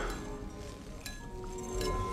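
Tense film soundtrack: sparse music over a low rumble, with high glassy clinks that ring on briefly, about a second in and again near the end.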